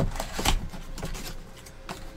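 Small cardboard trading-card boxes being handled on a tabletop: a few knocks and clicks as they are moved and set down, with the rustle of packaging being pulled out. A sharp click comes near the end.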